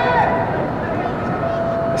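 Steady background noise of a soccer match, with faint, distant shouts from players on the pitch, one held call near the end.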